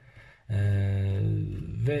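A man's voice holding a long hesitation sound, a steady 'ehh' lasting over a second after a brief pause, then the start of a spoken word near the end.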